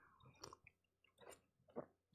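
Faint sips and swallows of coffee from a mug: three soft, short mouth sounds.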